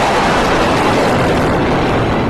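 Loud, steady roar of Rafale fighter jets' turbofan engines as they fly overhead.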